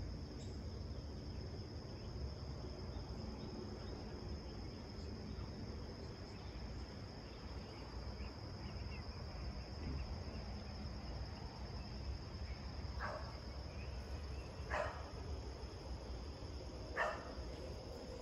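Steady high-pitched insect chorus, a continuous trill, over a low background rumble. Three brief sharp sounds break in during the last third.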